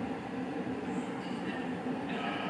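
Steady room noise in a hall with a seated audience, during a lull in the talk.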